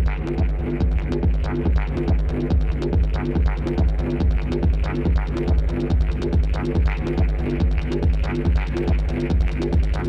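Electronic dance music played live from a DJ mix: a steady beat of about two kicks a second over heavy bass, with regular ticking percussion above.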